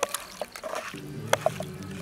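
Wet squishing of raw fish steaks being rubbed and mixed by hand with spice paste in a pan, with several sharp clicks.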